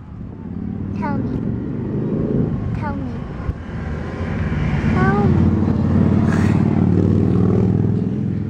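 A motor vehicle's engine running close by, a low drone that grows louder about halfway through and holds to the end.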